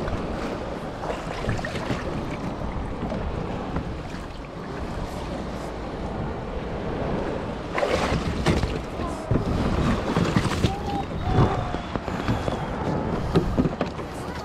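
Shallow water sloshing and lapping around a plastic fishing kayak as it is pushed off from the shore, with wind on the microphone. From about eight seconds in, a run of knocks and splashes on the hull as the kayaker climbs aboard.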